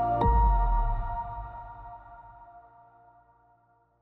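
Electronic logo sting: ringing chime-like tones with a deep bass hit about a quarter second in, then the whole chord slowly fades away to nothing near the end.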